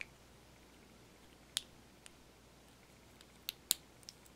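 A few sharp plastic clicks, one near the start, one about one and a half seconds in and two close together near the end, as a plastic dropper cap is twisted on a small blue glass bottle, its tamper-evident ring separating.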